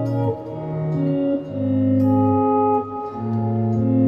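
Electric guitar playing a slow series of sustained chords. A new chord is struck about a third of a second in, another at about one and a half seconds, and another near three seconds.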